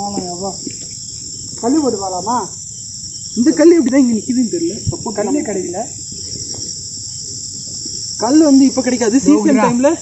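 Steady high-pitched chorus of insects, typical of crickets, running without a break, with men's voices talking over it at intervals.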